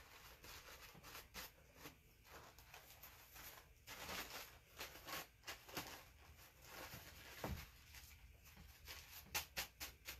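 Faint crinkling and rustling of paper coffee-filter flowers being handled and pressed down, with a quick run of light clicks near the end.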